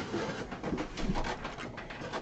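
Cardboard shipping box rustling and scraping as hands dig into it and lift out a boxed item, a quick run of crinkles and light taps.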